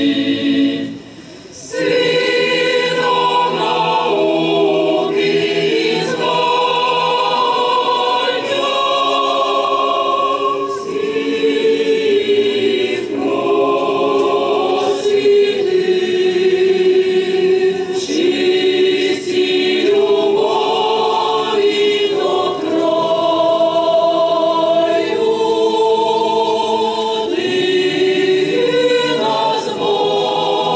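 Ukrainian folk choir singing a folk song in several-part harmony, unaccompanied, with long held notes. The singing breaks off briefly about a second in, then carries on without a pause.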